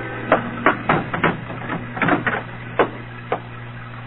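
Radio-drama sound effect of about eight uneven knocks or thuds, in two loose groups, over the steady low hum of an old broadcast recording.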